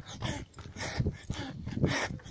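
Heavy, rhythmic panting of a tired runner, breathing hard through the mouth about twice a second in time with his stride.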